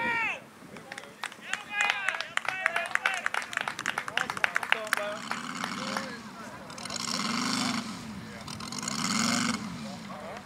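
Radial engine of a radio-controlled scale F6F Hellcat running at low throttle as it rolls out after landing. It is opened up briefly twice in the second half, each time rising and falling in pitch.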